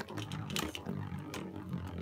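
A Beyblade spinning top whirring as it spins on the floor of a plastic stadium, with a steady rough hum and a few light clicks.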